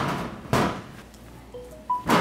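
Bread dough being kneaded by hand on a stainless steel table: one dull thump about half a second in as the dough is pushed down onto the metal, fading quickly, then quieter handling.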